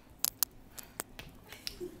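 A few sharp clicks and knocks at uneven intervals from someone walking along a hard laminate floor while carrying luggage.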